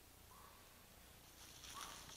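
Near silence: faint outdoor background, a little louder near the end.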